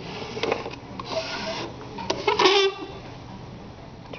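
Rubbing and scraping from plastic anatomical brain models being handled and turned, with a short murmur of a voice a little past the middle.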